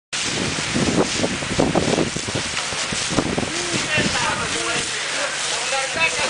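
Fire hose jet spraying water onto smouldering debris: a steady, loud hiss, with voices talking over it in the second half.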